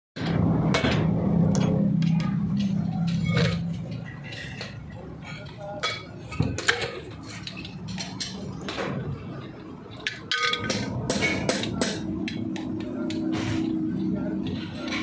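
Irregular metal clinks and hammer taps on steel as a wheel stud is fitted into a truck's wheel hub, with a steady low hum underneath, loudest for the first few seconds.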